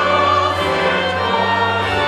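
Church choir singing a hymn, holding sustained chords over a steady low accompaniment.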